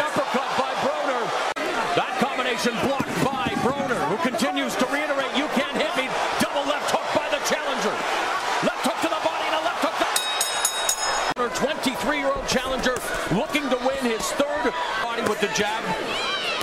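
Boxing arena sound: many voices from the crowd and ringside, with sharp smacks of gloved punches landing again and again.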